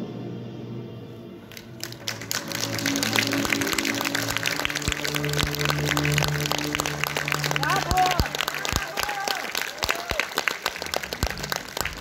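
Concert audience applauding with many clapping hands as the song's music dies away in the first couple of seconds, with a few voices calling out among the clapping.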